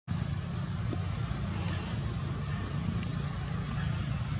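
A steady low rumble with a faint tick about three seconds in.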